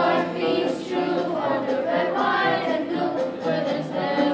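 Elementary school children's choir singing a patriotic song.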